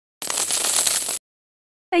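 Game-style coin-reward sound effect: a jingle of coins lasting about a second, marking a correct answer and coins added to the score.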